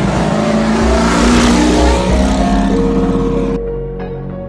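An off-road race vehicle's engine passing close by. The rush of engine and tyre noise swells to a peak about a second and a half in and cuts off suddenly near the end, with music playing underneath.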